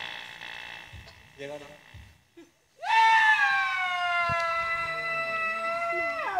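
One voice holding a single long high call for about four seconds, starting about three seconds in, its pitch sliding slowly down; before it, faint voices murmuring.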